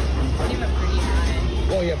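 Bowling alley ambience: a steady low rumble with faint background chatter, and a voice saying "yeah" near the end.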